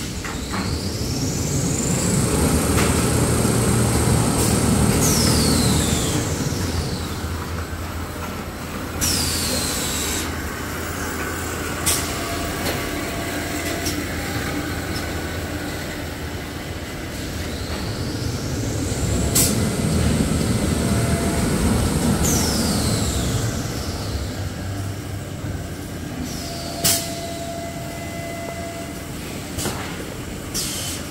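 Toilet-paper and kitchen-towel converting line running: a steady machine rumble, with a high whine that rises, holds and then falls away, a cycle that comes round about every 17 seconds. A few sharp clicks and short hisses sound over it.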